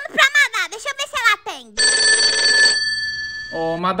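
A phone ringtone: a steady electronic ring of several held tones lasting about two seconds. It starts a little before halfway and cuts off just before the end.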